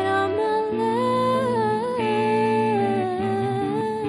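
Live slow ballad: a female singer holds long, gently gliding notes into a microphone over a soft band accompaniment with electric guitar.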